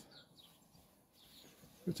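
A quiet background with faint bird chirps, and a man's voice starting up again near the end.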